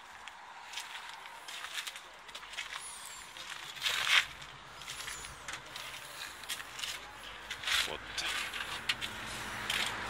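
Open-air background of people talking at a distance, with scattered short knocks and scuffs, one louder about four seconds in. A low steady engine hum comes in near the end.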